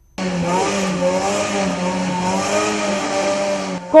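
Off-road four-wheel-drive race vehicle's engine running hard at high revs in a mud race, holding a steady, slightly wavering pitch over a steady hiss, for about three and a half seconds.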